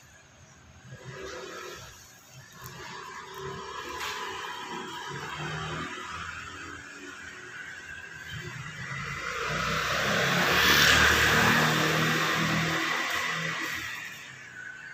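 A motor vehicle passing along the street: its noise grows steadily, is loudest about eleven seconds in, then fades.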